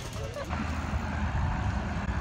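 Bicycle rolling along a concrete sidewalk: a steady rumble of tyres and wind on the microphone that starts about half a second in.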